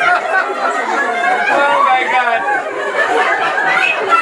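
A group of women talking over one another in lively chatter, many voices at once.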